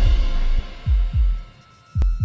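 Closing bars of a TV show's intro music: deep electronic bass thumps, paired like a heartbeat, each one dropping in pitch, over a faint held high tone.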